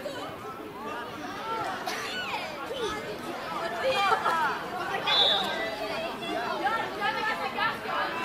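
Several voices of players and spectators calling out and chattering over one another on a football pitch, with no words standing out. A brief high-pitched note cuts through about five seconds in.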